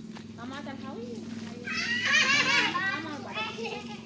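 Children's voices calling and shouting while playing, with a loud high-pitched squeal in the middle.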